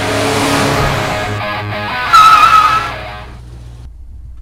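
Guitar music, then about two seconds in a car's tyres squeal in a loud, wavering screech lasting under a second, as in a skid.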